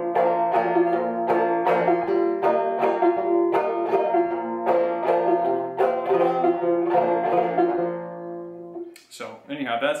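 1888 Luscomb open-back banjo, tuned about two frets below gCGCD, picked two-finger style in waltz (three-count) time: a steady run of plucked notes and chords that rings out and fades about eight and a half seconds in.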